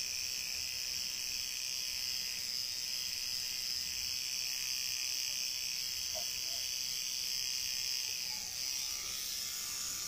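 Electric tattoo machine running with a steady high buzz as it works on skin; the buzz thins out a little about nine seconds in.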